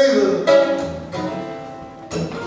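Slow blues on acoustic guitar with a harmonica: a held note bends downward at the start, and a new note sounds about half a second in and fades away.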